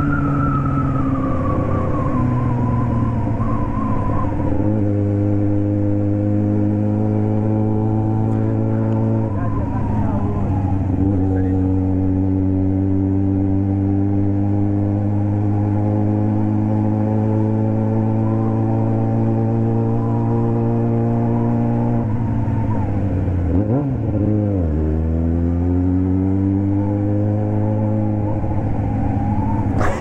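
Yamaha XJ6 inline-four motorcycle engine running under way, heard from the rider's position: the note winds down over the first few seconds, then holds steady for long stretches. It dips about ten seconds in and again a little before the end, then climbs as the bike accelerates.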